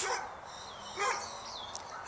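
A short, faint animal call about a second in, followed shortly after by a brief high chirp.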